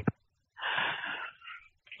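A man's short breathy laugh: a voiceless rush of breath lasting about half a second, with a fainter breath after it.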